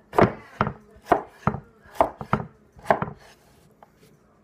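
An S7 Camp Bowie knife, 8-inch blade a quarter inch thick, chopping red potatoes on a wooden cutting board. About nine sharp chops come two or three a second, each one the blade cutting through potato and striking the board. They stop shortly before the end.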